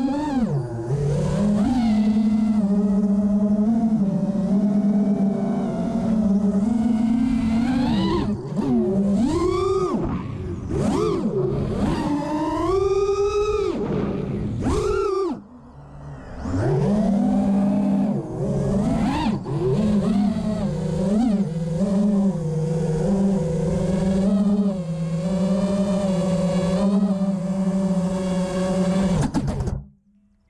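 Brushless motors and props of a 5-inch FPV quadcopter (Cobra 2207 2450kv motors) whining, the pitch swooping up and down with throttle through freestyle moves. The sound dips briefly about halfway through and cuts off suddenly at the end as the quad lands and disarms.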